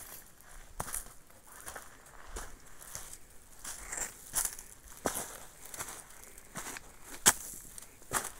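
Footsteps on a dry, leaf-littered stony trail, with leaves and twigs crunching at each irregular step and one sharper crack about seven seconds in.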